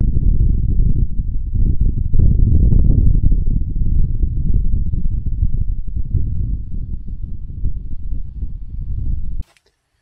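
Wind buffeting the microphone: a loud, rough, low rumble that rises and falls, then cuts off suddenly near the end.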